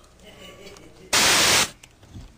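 A short burst of loud static hiss, about half a second long, starting about a second in and cutting off sharply. It serves as an edit transition into the hidden-camera footage.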